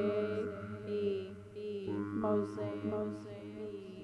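A voice saying "mosaic B" looped by a Hologram Microcosm pedal in Mosaic mode: overlapping repeats, some shifted an octave down, blend into a sustained, chant-like drone, and a new layer of repeats comes in about two seconds in. A steady low hum runs underneath, mic noise that she thinks comes from her microphone cord.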